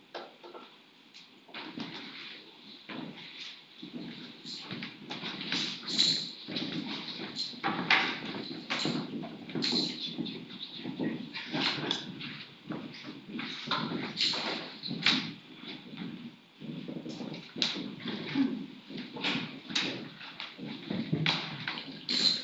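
Indistinct voices with a continuous run of irregular knocks, taps and shuffles as people move about and handle musical equipment.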